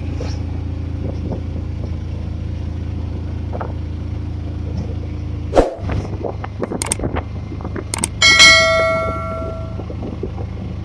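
Auto-rickshaw engine running steadily, heard from inside the cab. Near the end come a few sharp clicks, then a bright bell ding that rings out for about a second and a half: the sound effect of a subscribe-button animation.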